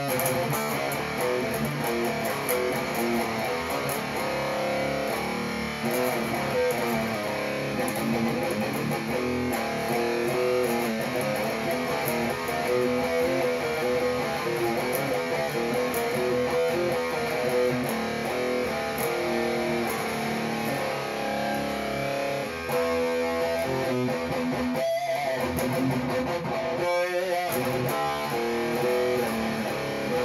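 Electric guitar playing riffs and strummed chords with a drop-tune capo on the second fret, which frets every string but the low E, so the open low string sounds as a drop tuning. The playing runs continuously, with two brief breaks near the end.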